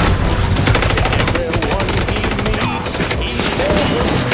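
Rapid gunfire in an action scene: a fast run of shots from about half a second in, lasting about two seconds, with further scattered shots after it.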